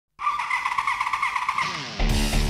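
A motorcycle engine running at high revs, a high wavering whine that cuts in abruptly, then fades and drops in pitch near the end.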